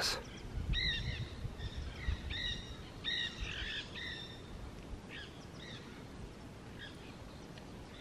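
Small birds chirping in short, repeated calls, thinning out after about six seconds, over a low steady rumble.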